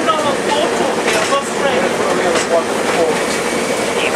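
Steady running noise inside a Class 142 Pacer diesel railbus, with voices talking over it.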